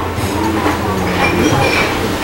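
Restaurant room noise: a steady low hum with scattered faint background sounds.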